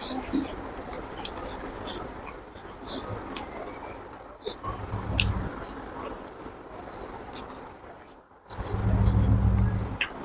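Close-up chewing and lip-smacking of a person eating rice and pork by hand, a scatter of short wet clicks. A low rumble swells briefly about five seconds in and again for about a second near the end.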